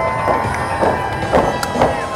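Music with a steady beat, about two beats a second, over a held note.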